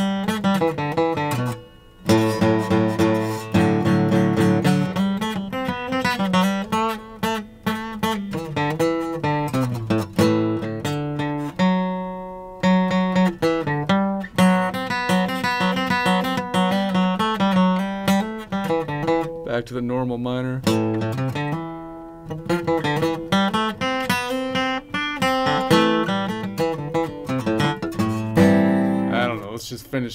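Steel-string acoustic guitar plucked with the fingers: a long run of single notes stepping up and down a scale pattern, with a few fuller chords and brief pauses, as minor-scale and mode practice.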